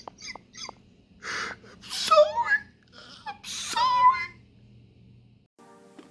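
A man's voice in a few short, breathy laughing bursts with wavering pitch, over a low steady hum. A brief buzzing tone sounds just before the end.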